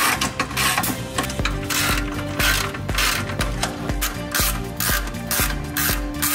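Ratchet wrench with an 18 mm socket clicking in repeated short strokes as it turns a bolt on a front suspension arm, over background music with a steady beat.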